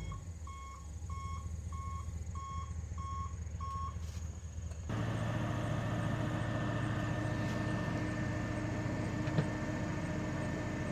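The dump truck's backup alarm beeping steadily as it reverses, stopping a little under four seconds in. About a second later the dump body's hydraulic hoist starts with a steady hum and keeps running as the bed tips up.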